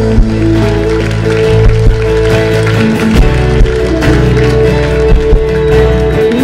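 Live worship music: held chords over a steady bass line, with acoustic guitar.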